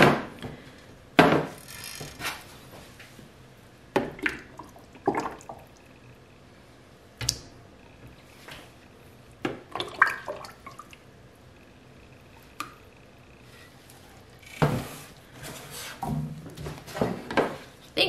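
Raw soap batter poured from a large stainless steel stock pot into white plastic buckets, with scattered sharp knocks as the buckets and pot are handled and set down on a stainless steel table.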